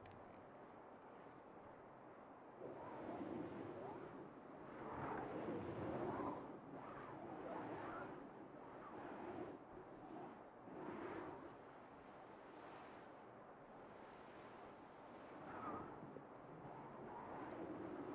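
A hand rubbing and smoothing a cotton bedspread: soft fabric rustling in repeated swells, starting a few seconds in.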